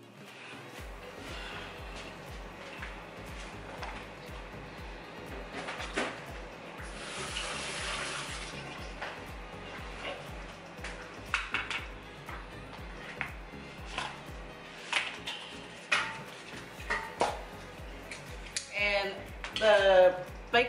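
Background music with a steady, evenly repeating bass beat, over scattered light kitchen clicks and knocks and a hiss of about two seconds near the middle.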